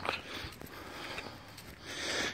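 Faint rustling of footsteps through grass and the walker's breathing, with a small click at the very start.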